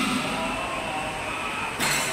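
Steady, even background noise of a large prayer hall, with no distinct event until a brief louder burst near the end.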